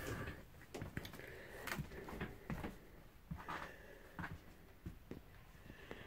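Faint footsteps and light knocks, a dozen or so scattered soft clicks, as a person walks through a small travel trailer's interior.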